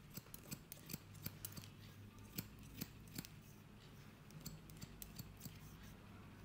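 Barber's steel scissors snipping through beard hair close up: quick, irregular crisp snips, thick in the first half and lighter and more spaced later, over a steady low hum.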